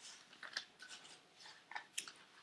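Faint, irregular rustling and small crackles of paper being handled, as pages are turned.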